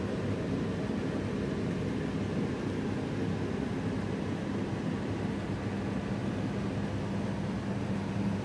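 A steady, even mechanical hum with a low drone and a hiss over it, unchanging throughout.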